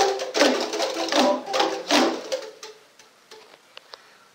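A group playing hand percussion together in a steady rhythm, about two to three pitched strikes a second, which stops about two seconds in; a few faint scattered taps follow.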